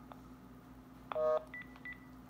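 Cordless phone handset beeping at the end of a call: a faint click, then a short keypad tone about a second in, followed by a few brief high beeps.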